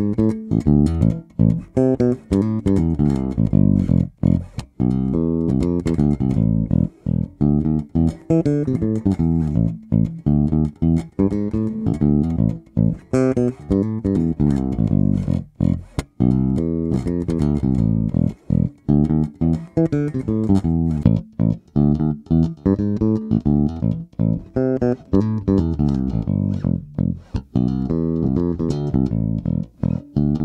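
Sterling by Music Man Ray4 electric bass played fingerstyle through its stock humbucking pickup, a continuous line of plucked notes with short gaps between phrases.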